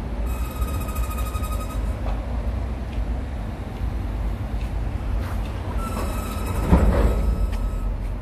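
A train passing nearby: a steady low rumble with high squealing tones, once for about a second and a half near the start and again around six seconds in. A knock is heard near seven seconds in.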